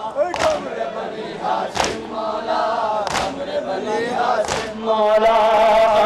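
Shia Muharram noha: a crowd of men chanting a refrain together, marked by loud unison chest-beating (matam) about once every 1.3 seconds. Near the end, a single male voice through the PA comes in, singing strong, drawn-out lines.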